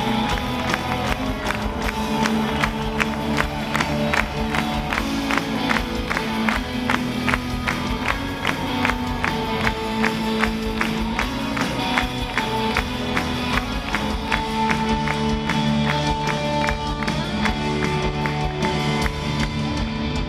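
Live rock band playing through a concert PA: electric guitars and keyboards over a steady drum beat, about three strokes a second.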